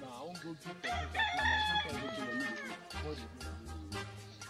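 A rooster crowing once: one long call starting about a second in and dropping in pitch near its end, over background music with a steady low beat.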